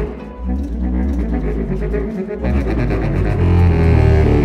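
Chamber ensemble of strings, Eppelsheim contrabass clarinet and baritone saxophone playing a classical piece, with deep sustained bass notes under moving string lines. The music swells louder in the second half.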